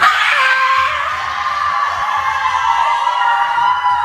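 A group of teenage girls screaming together in celebration: several high voices start suddenly in one loud, sustained shriek and hold it.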